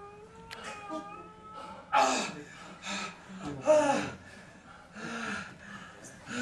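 A man's wordless vocalizing: a long wavering moan, then loud gasping cries about two seconds and just under four seconds in, and a softer moan near the end.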